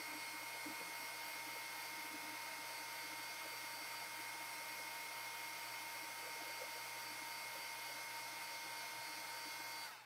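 Handheld hot-air dryer blowing steadily over freshly painted acrylic to dry it, a constant whooshing hiss with a thin whine in it. It switches off right at the end.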